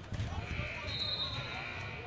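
Basketballs bouncing on a gymnasium's wooden court in a series of low thuds, with distant voices carrying in the hall.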